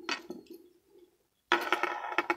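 A metal Scythe Kronos T125EDS Beyblade spinning down on a wooden tabletop: its steady spin hum fades out within the first second. About a second and a half in, it rattles rapidly against the table as it loses spin, wobbles and tips over.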